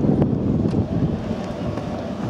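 Wind buffeting the camera microphone, a heavy, gusty low rumble that eases a little about a second in.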